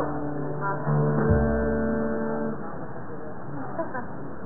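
A guitar chord is plucked about a second in and rings steadily for under two seconds before fading, with a low thump partway through.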